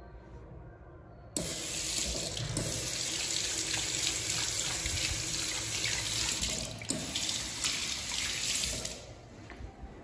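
Washbasin faucet coming on suddenly about a second in, with water pouring over a hand and into a ceramic sink. It runs steadily for about seven and a half seconds, then stops near the end.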